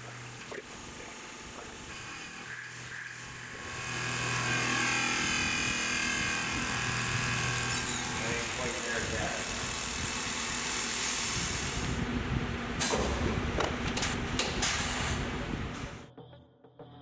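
CNC mill cutting an aluminum plate with mist coolant, in footage sped up eight times: a dense, steady machining noise that grows louder about four seconds in, with a run of sharp clicks near the end.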